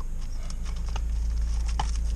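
Cardboard packaging and a plastic-wrapped wooden tray being handled and pulled from its box, with small scattered rustles and taps. Under it is a low steady rumble in the car cabin.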